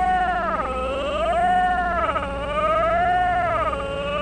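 A siren-like wailing tone that rises and falls slowly in pitch, one swell about every second and a half.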